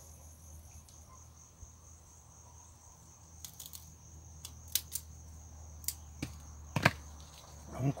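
Steady high-pitched cricket chirring throughout. From about halfway in, a series of sharp clicks and snips as scissors cut small shoots off a kale stalk, the loudest near the end.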